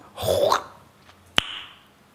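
A man's mouth noise: a short breathy slurp through pursed lips, as if taking something cool into the mouth, then a single sharp mouth click about a second and a half in.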